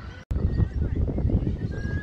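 Wind buffeting the camera microphone: a loud, irregular low rumble that starts abruptly after a brief dropout about a quarter second in.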